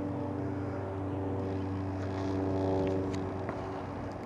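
A steady, droning motor hum with an even pitch, swelling slightly a little past the middle.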